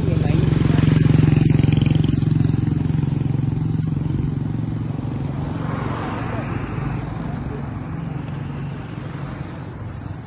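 A motor vehicle engine running close by. It is loudest in the first couple of seconds, then fades gradually.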